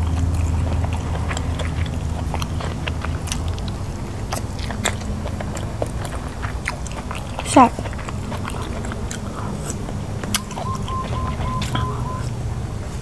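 Close-up chewing of sticky rice and pork-and-vegetable curry, with many small wet mouth clicks and smacks. A low hum fades out over the first couple of seconds.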